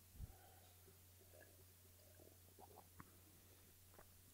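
Near silence: a faint steady low hum, with a few faint small clicks and mouth sounds as ginger beer is sipped and swallowed, the sharpest click about three seconds in.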